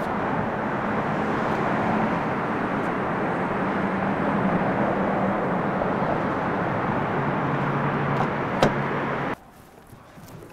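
Steady road-traffic noise, a continuous rumbling hum, with a single click shortly before it cuts off suddenly near the end.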